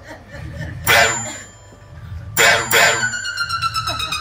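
Experimental electronic music: two short, harsh noise hits about a second and a half apart, then a held electronic tone with many overtones that slowly slides down in pitch.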